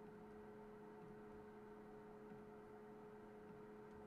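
Near silence: the recording's background, with a faint steady hum.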